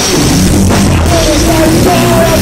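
A rock band playing loudly in rehearsal: drum kit and electric bass, with a wavering high melodic line over them.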